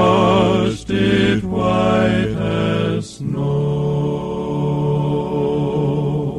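Male gospel quartet singing in close four-part harmony, the closing phrases of a hymn broken by short breaths. About three seconds in they settle on a long final chord, held with vibrato.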